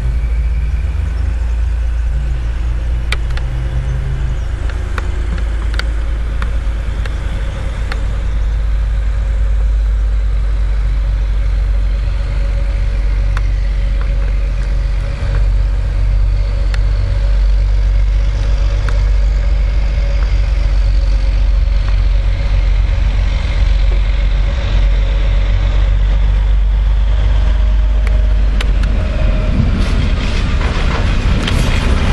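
Vintage diesel railcar running: a steady engine drone over a deep rumble, with a thin steady whine coming in about a third of the way through. Sharp wheel clicks on the rails sound now and then, becoming denser near the end as it draws close.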